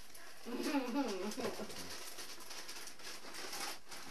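Indistinct voices in a small room. A short murmured, wavering phrase comes about half a second in, then lower background chatter.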